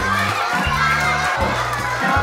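A crowd of young children shouting and cheering together, with many voices overlapping, over background music with a steady bass line.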